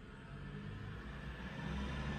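Low, steady background rumble with a faint hiss above it, swelling slightly near the end.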